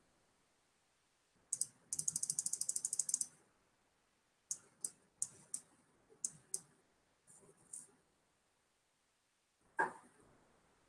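Faint computer mouse clicking: a quick run of scroll-wheel notches at about ten a second, lasting just over a second, then about eight single clicks spread over the next few seconds as the chart is zoomed and scrolled.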